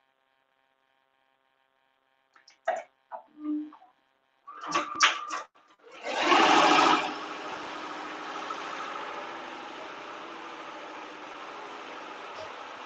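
A few clicks and a short beep from a Tajima embroidery machine's controls, then about six seconds in the machine starts up, loudest for the first second, and settles into its steady run.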